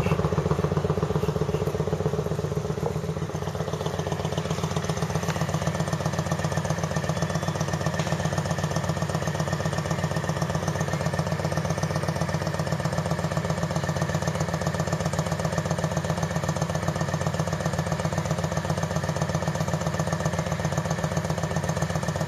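2009 Kawasaki Vulcan 900 Custom's V-twin idling steadily, heard from about 25 feet away, through its stage 1 modified stock exhaust: the cover removed, the end pipe cut off and holes drilled in the baffle caps to make it louder and deeper.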